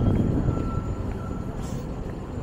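City street traffic: a steady low rumble of vehicles driving past, louder in the first half second, with a faint thin high tone that fades out after about a second and a half.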